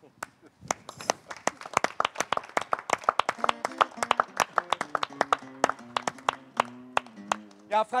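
A small audience applauding, the individual hand claps distinct and irregular, starting about a second in and going on throughout. Faint low held tones sound beneath the clapping in the second half.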